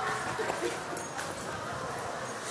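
Indistinct background voices and general hubbub, with a few short, faint pitched sounds and light handling knocks on the phone's microphone.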